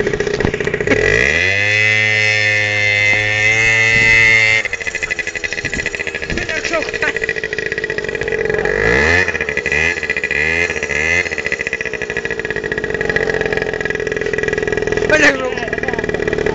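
Kymco Movie scooter engine revving during spins: it revs up about a second in, holds high for a few seconds and drops, then gives several short revs a few seconds later. A steady high whine runs underneath.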